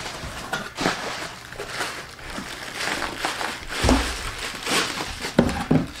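Bubble wrap and plastic packaging crinkling and rustling as a wrapped item is handled and lifted out of a cardboard shipping box, with a dull thump about four seconds in.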